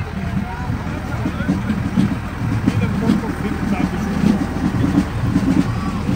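Diesel tractor engine running at low revs as it tows a carnival float slowly past at close range: a steady, pulsing low rumble. Crowd voices can be heard over it.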